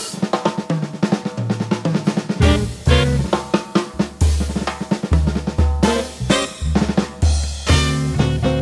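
Drum solo on a jazz drum kit: fast snare and tom strokes over bass drum, with several cymbal crashes.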